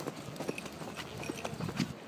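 Footsteps tapping irregularly on asphalt, a few sharp taps a second.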